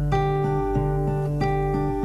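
Acoustic guitar strumming a steady chord pattern, each chord held and restruck about every two-thirds of a second.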